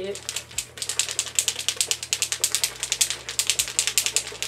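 A bottle of L'Oréal liquid hair chalk being shaken hard, giving a rapid, even rattle of clicks, to mix the colour before it is poured out.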